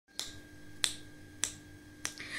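Fingers snapping three times at an even pace, about 0.6 seconds apart, counting in the beat before unaccompanied singing.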